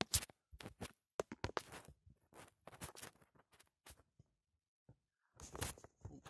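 Scattered light clicks, knocks and rustles of handling as a phone camera is moved about and a roll of electrical tape is picked up, with a longer rustling scrape about five and a half seconds in.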